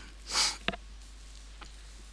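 A narrator's short breath, followed by a single faint click, over quiet room tone.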